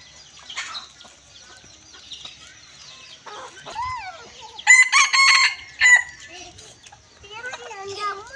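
A rooster crows once, loudly, about five seconds in, a crow lasting a little over a second. Fainter calls come before and near the end.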